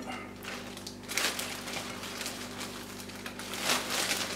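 Clear plastic bag rustling and crinkling as a hand scoops coarse peat out of it, with louder rustles about a second in and near the end. A faint steady hum sits underneath.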